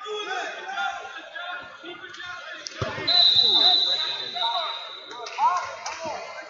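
A wrestler thrown heavily onto the rubber mat in a 4-point Greco-Roman throw: one sharp thump about three seconds in. A long, shrill whistle blast follows at once and stops about two seconds later, over crowd voices echoing in a large hall.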